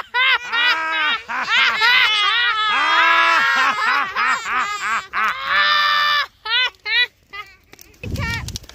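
A child and an adult shrieking, squealing and laughing in a long run of high, rising-and-falling cries, breaking into a few short yelps near the end.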